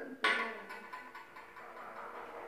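Metal spoons being set down on a tabletop: a sharp, ringing clink about a quarter second in that fades away, followed by a few faint ticks and knocks as things are handled on the table.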